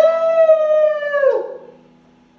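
A person's voice imitating a wolf howl: one long, loud, held howl that dips in pitch and fades out about a second and a half in, ending the song.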